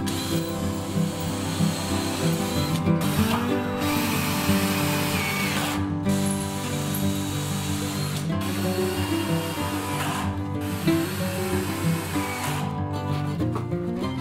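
Cordless drill driving screws into wooden boards in several runs with short pauses between them, stopping shortly before the end, over background music.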